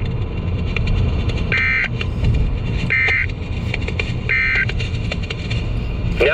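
Weather alert radio sounding three short, identical electronic data buzzes about 1.4 seconds apart, the coded end-of-message bursts that close a NOAA Weather Radio alert broadcast, over the steady low rumble of a car.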